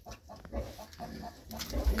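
Faint calls from pigeons in the loft, with a low rumble of the camera being moved near the end.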